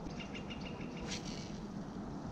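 Faint bird chirps: a quick row of short high notes early on and another brief one about a second in, over a quiet outdoor background.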